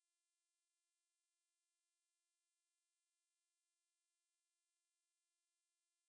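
Near silence: the audio track is essentially blank.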